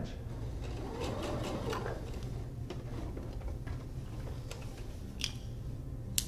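A computerized sewing machine runs briefly, rising and then falling in speed, as it stitches off the edge of the fabric. A few light, separate clicks follow.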